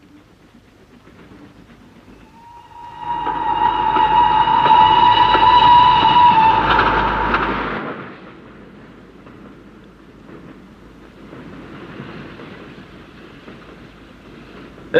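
A passenger train running, with its whistle sounding one long steady note for about five seconds over the loud rumble of the carriages. After the whistle stops, the train runs on more quietly.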